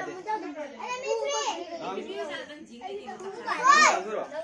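Several children's voices chattering and talking over one another, with one louder call shortly before the end.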